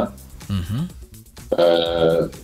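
A man's speech with a short pause, in which a brief low throaty vocal sound rises and falls about half a second in; a quiet music bed runs underneath.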